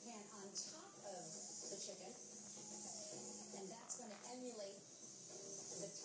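Pet parrots chattering and mumbling in soft, speech-like warbles, over a steady high hiss.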